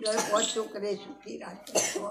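An elderly woman talking, her speech broken by a short cough.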